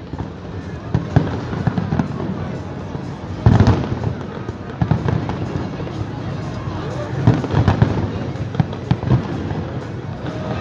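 Fireworks display going off in an irregular string of bangs, the loudest burst about three and a half seconds in and another cluster near eight seconds.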